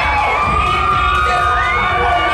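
Crowd shouting and cheering, many high-pitched voices calling out over one another at once.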